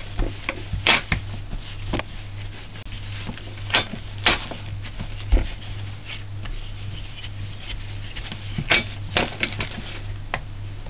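Wooden rolling pin rolling out bread dough on a wooden cutting board, with irregular knocks and clacks as the pin meets the board, over a steady low hum.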